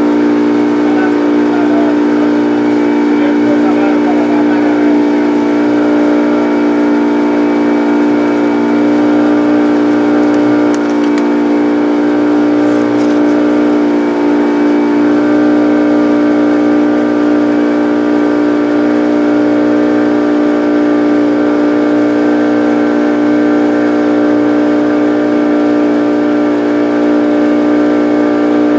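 A boat's engine running at a steady speed, one constant drone that does not change in pitch.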